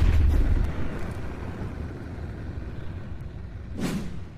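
Intro sound effect: a sudden hit right at the start, followed by a noisy wash that slowly fades, and a short whoosh near the end as the picture glitches.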